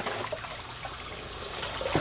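Kitchen faucet running, the stream of water splashing off a plastic plate into a soapy pot in the sink.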